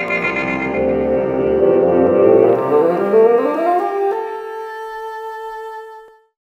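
Short musical intro sting: a full chord of several instruments whose lower notes slide upward and merge into a single held note about two-thirds of the way in, which then sustains and stops near the end.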